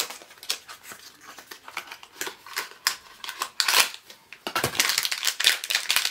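Small clicks and rustles of a cardboard mystery-pin box being handled and opened, then a denser crinkling of the blind bag inside during the last second or so.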